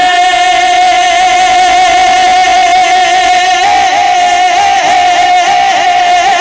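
Male naat singer holding one long sung note into a microphone, then breaking into wavering, ornamented phrases about three and a half seconds in.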